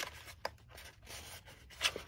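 Kraft cardstock pillow box being folded and handled: faint paper rustling and scraping, with a brief crisp crackle about half a second in and a louder one near the end.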